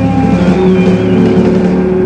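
Electric blues trio of distorted electric guitar, bass and drums holding a long sustained chord, with a high note wavering in vibrato above it. It has the sound of a song's closing chord ringing out.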